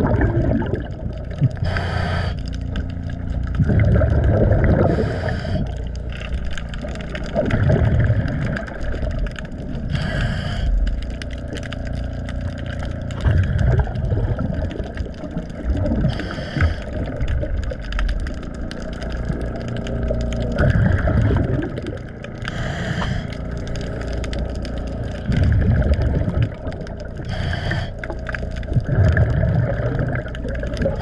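Underwater scuba breathing through a diver's regulator: a short hiss on each inhale and a low bubbling rumble on each exhale, a breath every five to six seconds, with scrubbing of a pad against a boat's hull between breaths.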